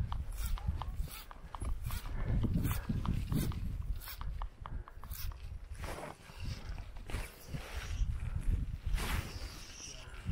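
Wind rumbling unevenly on the microphone, with light clicks and a few brief swishes from fly line being handled and cast.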